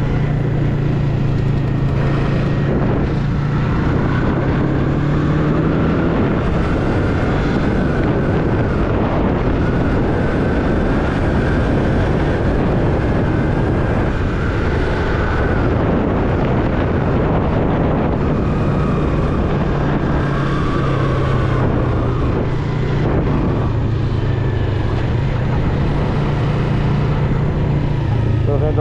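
Yamaha MT-03's 321 cc parallel-twin engine running under way, with wind rushing over the microphone. Its pitch rises and falls through the middle and settles into a steadier low note for the last third.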